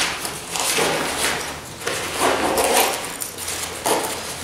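Handling noise from a nylon backpack being moved and turned over on a table: a run of short fabric rustles and scrapes with light clicks from its zip pulls and strap fittings.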